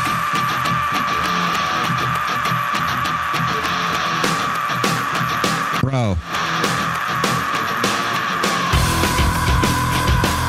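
Heavy rock song playing: a male singer's long, unbroken scream held on one high pitch through the whole stretch. The band thins out underneath and comes crashing back in near the end, with a brief sweeping glitch about six seconds in.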